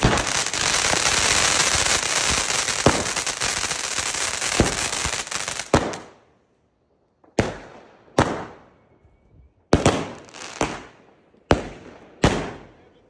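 Weco Blow Out firework battery: its opening fountain hisses loudly with scattered crackles for about six seconds, then dies away. After a brief silence about five sharp bangs follow, roughly a second apart, each trailing off as its aerial burst opens.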